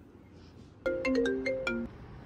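Mobile phone ringtone: a short melody of about eight quick notes, lasting about a second, that stops abruptly.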